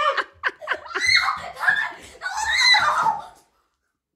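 People laughing and shrieking in two long loud bursts, which cut off suddenly about three and a half seconds in.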